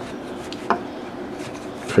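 Faint handling noises of paracord being worked over a PVC pipe with a metal fid, with one sharp click about a third of the way in.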